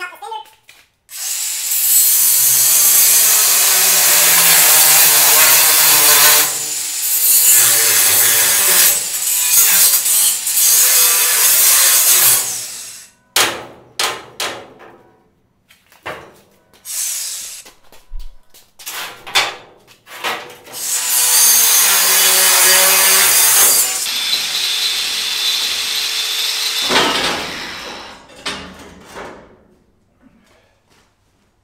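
A DeWalt 20V cordless angle grinder with a 4½-inch cut-off wheel cutting through steel angle and strap. It makes two long cuts with short bursts between them, then winds down near the end.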